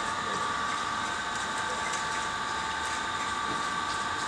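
Steady mechanical hum with a few high, level whining tones over a constant hiss.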